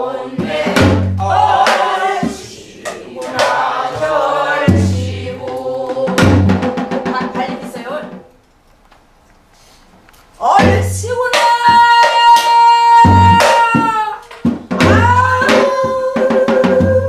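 A group singing a Korean Namdo folk song in unison, accompanied by strokes on buk barrel drums. The singing and drumming break off for about two seconds after eight seconds. They then resume with a long, steady held note over the drum beats.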